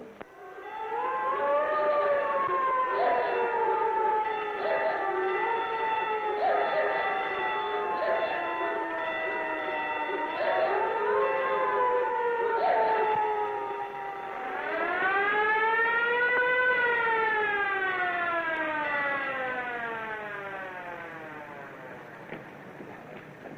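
Sirens wailing on a worn early-sound film track. Two overlapping sirens rise and fall, with short blasts cutting in. Then a single long wail rises from about two-thirds of the way in and slowly falls away until the end.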